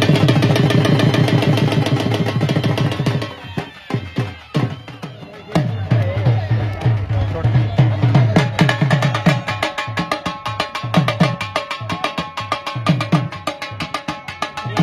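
Dhol drum beaten in a fast, continuous rhythm, with people's voices over it. The drumming is loudest in the first few seconds, thins briefly after about four seconds, then picks up again.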